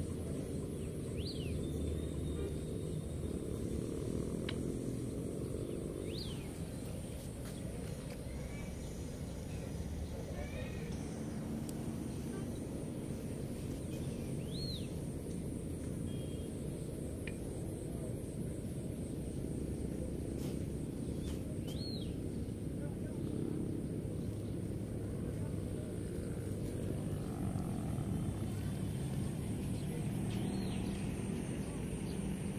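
Outdoor mountain ambience: a steady low rumble with faint distant voices. A bird gives a short high chirp four times, several seconds apart.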